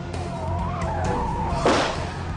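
Car tyres squealing in a skid over a low engine rumble, with a short loud rush of noise near the end.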